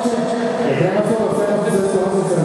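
Live grupero band music, with held notes and a man singing into the microphone.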